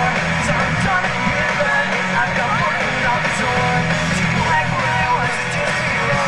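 Live rock band playing loud amplified music, electric guitar prominent, recorded from within the audience so the sound is full of hall and crowd.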